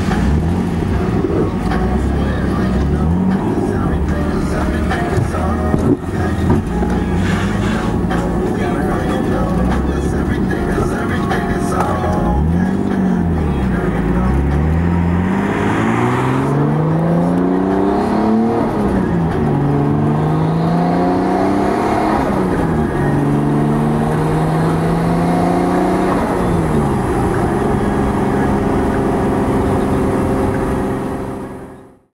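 Car engine heard from inside the cabin, accelerating through the gears. In the second half its pitch climbs and drops back several times as it shifts.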